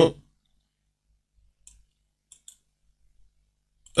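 A few faint, sparse computer mouse clicks while selecting text on screen.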